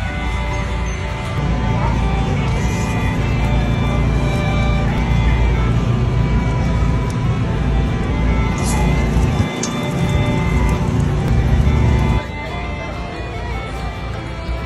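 Background music with a heavy bass line; the bass drops out briefly about nine and a half seconds in, and the music gets quieter about twelve seconds in.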